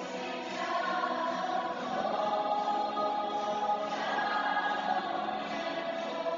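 A small choir of young voices singing a hymn in held, sustained notes, with acoustic guitar accompaniment.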